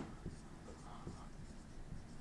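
Dry-erase marker writing on a whiteboard: faint strokes and light taps of the marker tip as letters are written.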